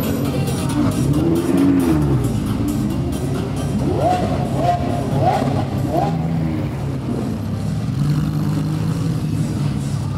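A supercar engine revved in four quick blips around the middle, then settling to a steady idle, heard over music and voices.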